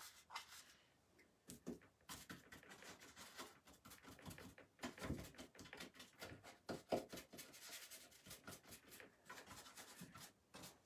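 Faint, irregular scratchy strokes of a small paintbrush brushing and dabbing paint onto a wooden piece of furniture, most busy after the first couple of seconds.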